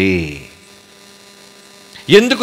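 A man's amplified voice finishes a drawn-out word in the first half second. Then a faint, steady electrical mains hum from the sound system carries through the pause.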